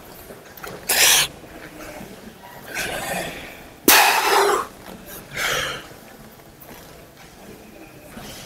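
A man's hard breathing through the mouth while straining through biceps-curl reps on a preacher-curl machine: about four forceful exhales. The loudest comes about four seconds in and starts sharply.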